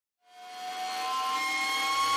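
Logo intro sound effect: a synthesized drone of several held tones that swells in from silence, rising slowly in loudness and slightly in pitch.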